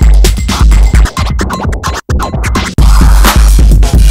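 Electronic dance music played from vinyl on turntables, with a heavy, steady bass kick. About a second in, the kick drops out for a short break of rapid, choppy scratch sounds. The full bass beat comes back near the three-second mark.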